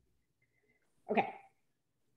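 Near silence for about a second, then a woman says a single short "okay" with falling pitch.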